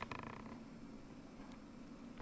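Faint, rapid ratchet-like clicking of a computer mouse scroll wheel for a fraction of a second near the start as the page scrolls, then a faint low hum.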